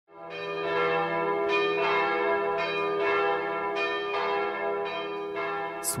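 Bells struck one after another, about nine strikes in a slow, uneven run, each ringing on over a low steady hum.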